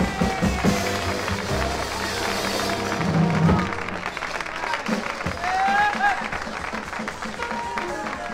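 A 1960s pop-soul song played from a vinyl LP, the band ending about four seconds in and giving way to crowd voices and scattered applause.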